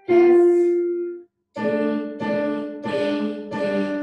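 Piano playing a simple single-note melody line: one held note, a short break just over a second in, then four notes in even succession.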